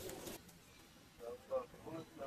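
Baby macaque giving three or four short calls that rise and fall in pitch, starting about a second in, after a brief noisy patch at the very start cuts off.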